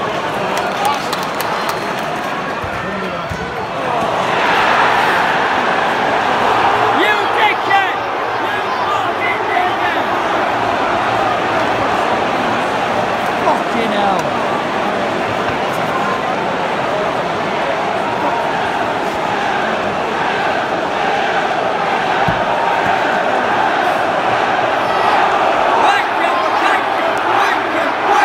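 Large football-stadium crowd reacting to an away-side goal: the mass of voices swells about four seconds in and holds as a loud, sustained roar.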